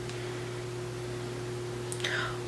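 Steady low electrical hum with an even background hiss; no distinct sound stands out above it.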